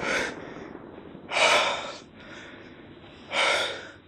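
A young man breathing hard: two loud, sharp breaths about two seconds apart, each about half a second long.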